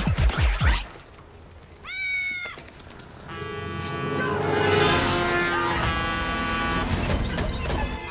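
Beat-driven electronic music cuts off about a second in, followed by a single short cat meow about two seconds in. From about three seconds, sustained layered film-score music builds and carries on.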